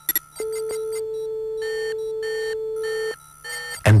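Electronic tones: a steady mid-pitched tone held for about three seconds, with a higher tone and a few short beeps about half a second apart laid over it.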